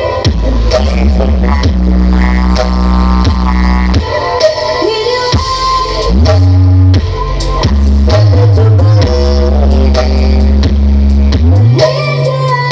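Loud music played through a stacked horeg-style sound system of subwoofer and mid-range boxes, dominated by long, deep bass notes that change every second or two, some sliding in pitch.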